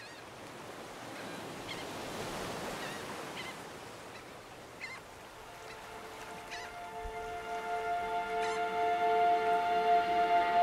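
Waves washing on a shore, swelling and fading, with a few short bird calls; about halfway in, music of sustained held string notes fades in and grows steadily louder.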